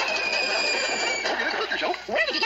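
Cartoon falling sound effect heard through a screen's speaker: a high whistle that slides slightly downward over a rushing hiss, cutting off after about a second, followed by a short stretch of noise.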